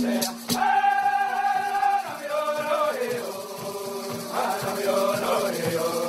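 A group of men singing an Iroquois social dance song in unison: a held note, then a falling melodic line. The fast rattle beat drops out about half a second in, leaving mostly the voices.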